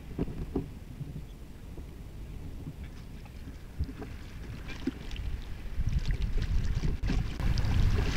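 Kayak paddle strokes dipping and splashing in the river, with the low rumble of wind on the camera microphone that grows louder in the second half.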